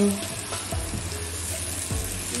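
Onion-and-pepper sauce sizzling in a frying pan, a steady hiss, as a wooden spatula stirs through it with a few soft knocks.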